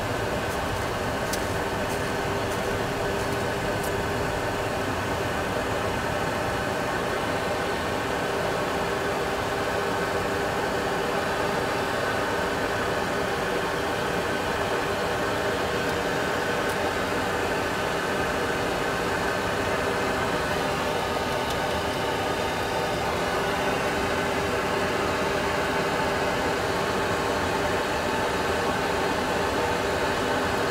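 Steady jet engine and airflow noise in the cockpit of a Boeing 737 Classic full flight simulator during the climb, a constant hum with several held tones. A few faint clicks sound in the first seconds.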